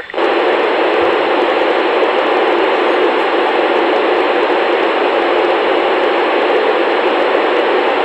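Steady radio static from a Yaesu FT-897D receiver tuned to the ISS downlink. The station's transmitter is unkeyed between answers, so the receiver passes loud, even hiss. The hiss cuts off suddenly when the ISS transmits again.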